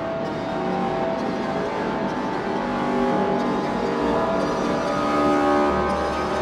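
Output Arcade 'Aura' loop played from a MIDI keyboard: a sustained synth texture of held notes that step to new pitches every second or two as the loop is shifted up the scale, with a low bass swelling in near the end.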